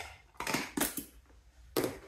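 A metal measuring spoon scraping and tapping while cream of tartar is scooped from a plastic canister and tipped into a stainless steel mixing bowl: four or five short scrapes and clicks with quiet between, the last a little before the end.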